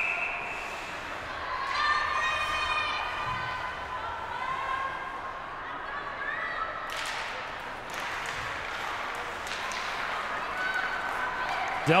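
Ice hockey rink sound around a faceoff: a short whistle at the very start and scattered voices from players and crowd. From about seven seconds in, after the puck is dropped, skates scrape the ice and sticks click on the puck and ice.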